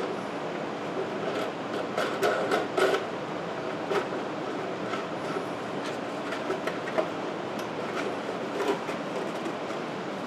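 Small scattered clicks and taps of a sheet metal screw and lock washer being handled and fitted by hand, over a steady background noise.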